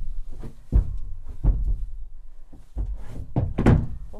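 Hooves of a Silesian Noriker draught mare thudding on a horse trailer's wooden loading ramp as she backs out: several heavy thuds, the loudest near the end.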